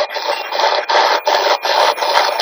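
SB-11 spirit box sweeping through radio stations: bursts of radio static chopped about three times a second.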